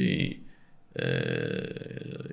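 A man's speech trails off, then about a second in he holds a long, steady hesitation sound ('ehh') at one pitch for just over a second.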